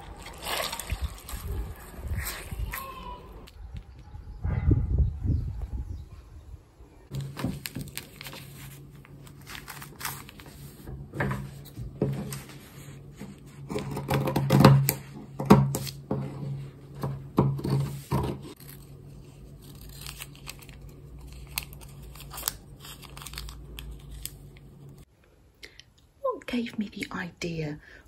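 Wet cotton fabric being squeezed and sloshed in a bowl of tea for tea-staining, followed by scissors cutting through the cotton with repeated sharp snips over a steady low hum.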